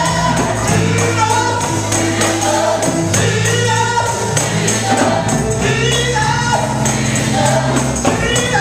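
Live gospel music: several voices singing with a band, a tambourine jingling along with the beat.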